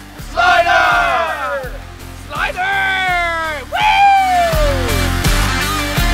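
Men's voices yelling three long, drawn-out shouts, each falling in pitch, over rock music whose beat gets louder near the end.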